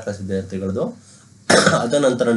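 Speech: a man narrating, pausing for about half a second, then starting again with a sudden, harsh onset.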